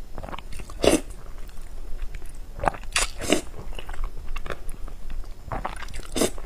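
A person slurping and chewing a mouthful of thin sauced noodles close to the microphone: short wet sucking and mouth sounds, with sharper bursts about a second in, three in quick succession around the three-second mark, and another near the end.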